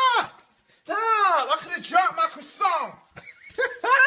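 High-pitched cartoon character voices making short wordless calls that rise and fall, several in a row.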